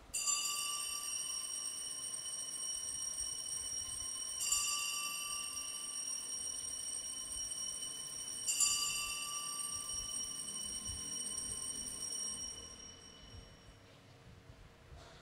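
Altar bell struck three times, about four seconds apart, each stroke ringing on in several clear high tones and dying away slowly, marking the elevation of the chalice at the consecration.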